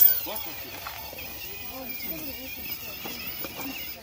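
Indistinct background talk from people nearby, with a faint high wavering whine from the RC crawler's electric motor as it climbs onto a rock.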